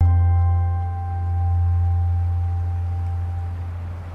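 A single deep, ringing musical tone that starts suddenly and slowly fades, with fainter higher overtones fading out before it.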